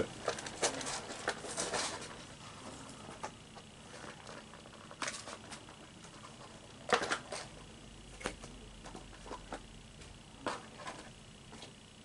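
Scattered light clicks and rustles of a Pokémon theme deck's packaging being opened carefully by hand, with the clearest clicks about five and seven seconds in.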